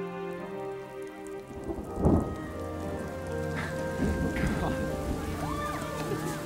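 A soft musical score fades out, then a sudden loud crack of thunder comes about two seconds in, and heavy rain pours down steadily after it.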